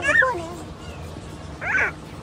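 Young children's high-pitched excited calls: gliding squeals at the start and another short one near the end.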